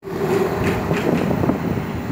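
Ride noise outdoors: a vehicle running with street noise and wind rumbling on the microphone, with a few small knocks.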